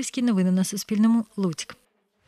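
A girl's voice speaking, the speech breaking off shortly before the end, followed by a moment of silence.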